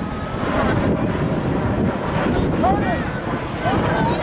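Scattered distant shouts and calls from coaches and spectators around the field, over a steady low wind rumble on the microphone.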